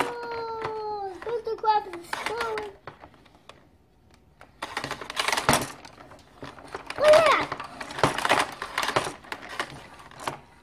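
A young child's voice making drawn-out, falling vocal sounds rather than words, mixed with clicking and rattling of plastic toy parts as the playset's Ferris wheel is turned.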